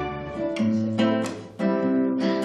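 Background music of strummed acoustic guitar chords, with a new chord struck about halfway through and again near the end.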